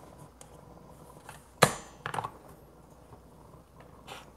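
Espresso gear being handled at the machine: one sharp hard clack about a second and a half in, with a few softer clicks around it.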